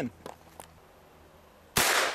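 A single shot from a Henry Big Boy Steel lever-action rifle firing a .44 Magnum cartridge with a 255-grain bullet from a 20-inch barrel. It is one sharp crack near the end, with a short reverberant tail.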